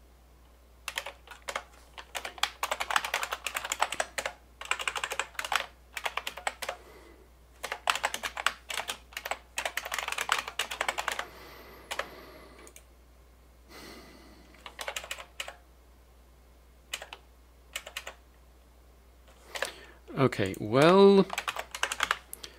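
Typing on a computer keyboard: quick runs of keystrokes for the first dozen seconds, then a few scattered keystrokes. A voice sounds briefly near the end.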